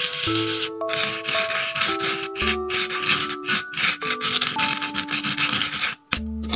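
A plastic spoon rubbing coloured sand across an adhesive sand-art board, a continuous gritty scraping with a few brief pauses. Light background music with a simple stepwise melody plays underneath.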